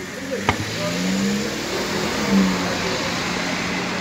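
A car's engine running close by, a steady hum that swells a little past the middle, with a sharp click about half a second in.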